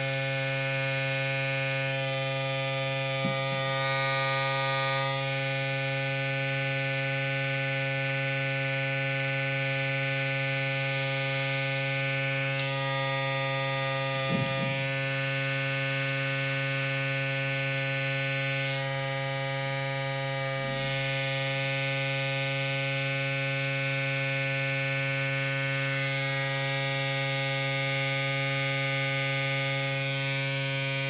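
Small airbrush compressor running with a steady hum, under the hiss of air and paint from the airbrush as it sprays a nail tip. The hiss changes a few times as the trigger is worked.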